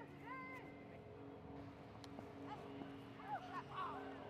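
Faint, distant shouts of voices across an outdoor sports field, a brief call near the start and several more in the last second, over a low steady hum.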